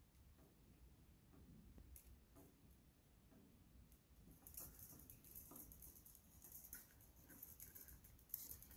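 Faint clicks and scratching of steel wire being handled and fed through a gripple wire joiner, getting busier about halfway through.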